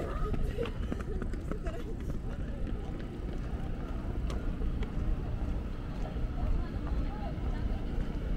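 Outdoor ambience: a steady low rumble with faint voices of people nearby, clearest in the first second, and a few scattered light clicks.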